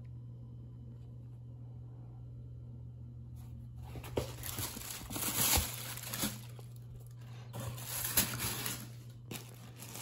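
Tissue paper rustling and crinkling in a cardboard shoebox as a hand moves a shoe among it, in irregular bursts beginning about three and a half seconds in. A steady low hum runs underneath.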